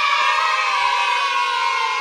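Children's voices holding one long sung note that slowly falls in pitch, then cuts off suddenly at the end.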